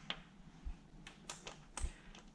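A few faint, sharp clicks and taps of small metal parts being handled: the bolts and the alloy oil filter housing knocking lightly as they are picked up and set in place.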